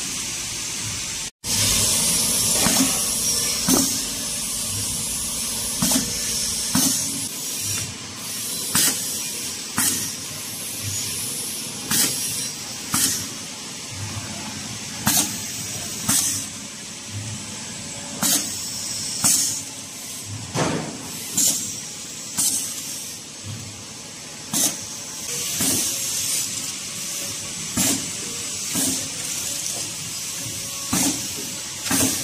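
Automatic liquid sachet packing machine running: a steady mechanical hum broken by sharp pneumatic air hisses and clacks from the piston filler and sealing jaws. These come in pairs about a second apart and repeat every three seconds or so as each sachet is filled and sealed.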